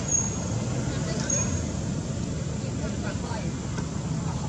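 Outdoor background: a steady low rumble with faint distant voices, and two short high chirps in the first two seconds.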